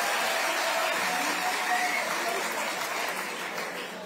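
Large audience applauding, easing off slightly toward the end.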